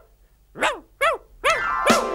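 Dog barking: four short barks about half a second apart, starting after a brief pause.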